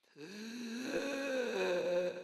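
A person's voice holding a long, wordless, low vocal groan that starts suddenly out of silence, its pitch lifting slightly and then holding steady.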